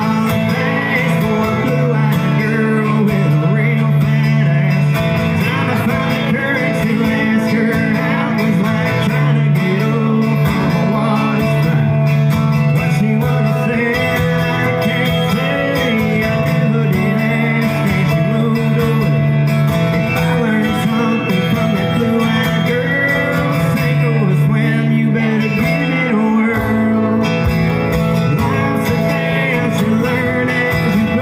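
Live country music: two guitars played together, with a man singing over them into a microphone.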